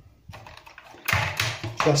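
A run of small, light clicks and taps as a plastic toilet flush valve and its silicone seal are handled and set down on a ceramic basin, followed by a man's voice.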